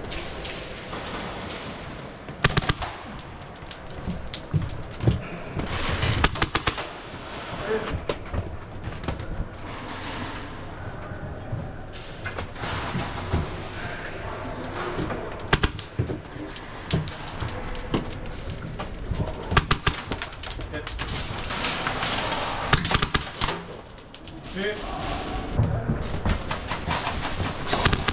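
Airsoft guns firing in short rapid bursts, several bursts scattered through, over a busy background of voices.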